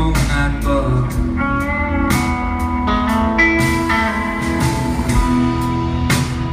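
Live rock band playing an instrumental passage: electric guitars holding long notes over a drum kit, with frequent cymbal hits.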